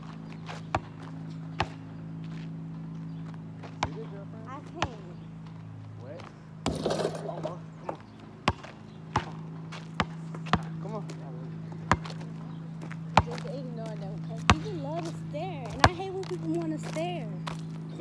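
A basketball being dribbled in one-on-one play: about a dozen sharp bounces at irregular gaps of roughly a second, over a steady low hum. A brief noisy rush comes a little before halfway, and voices are heard near the end.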